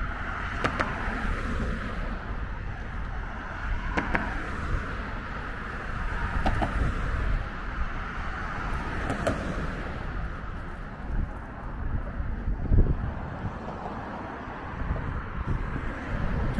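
Steady road traffic noise from cars passing on the bridge roadway alongside, a continuous hum of engines and tyres with a few faint clicks.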